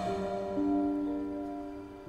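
Soft background music of sustained, held notes, with a new note entering about half a second in and the level slowly falling.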